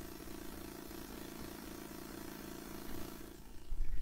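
Quiet room tone in a church sanctuary: a steady, faint hum and hiss with no speech.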